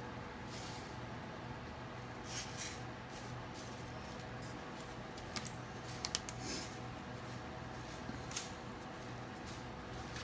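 Short, faint rustles and crinkles from a disposable aluminium foil pan and hands as salt-and-pepper rub is sprinkled and patted onto a beef chuck roast, over a steady low hum.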